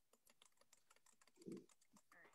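Faint, rapid, irregular clicking over near silence, with a short low sound about one and a half seconds in.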